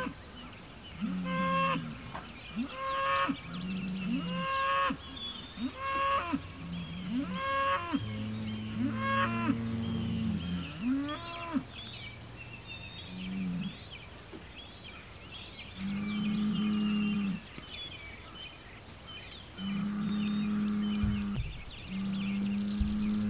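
Hereford bull bellowing in a challenge to rival bulls nearby. For the first half it gives short, low calls about once a second, each with a higher whining note on top. Later come a few longer, drawn-out bellows with pauses between them.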